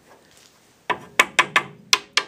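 A hard object tapped repeatedly against the metal coil of an old welder's high-frequency coupling transformer, in a test of whether the coil form is brass. The taps are quick, sharp and lightly ringing, about four or five a second, and begin about a second in.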